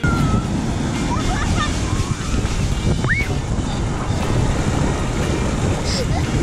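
Surf washing in over wet sand at the water's edge: a steady rushing noise, heaviest in the low end and flickering constantly. A brief high rising call comes through about three seconds in.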